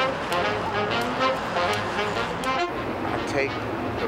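City street sound of traffic and people's voices, with background music laid over it.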